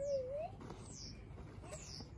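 Faint, high, falling chirps from a bird, three of them about a second apart, over low background. In the first half second there is the tail of a man's drawn-out, wavering voiced sound.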